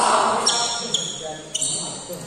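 Badminton rally on an indoor court: three sharp hits about half a second apart, each followed by a brief high ringing. A loud burst, likely a voice or shout, comes first.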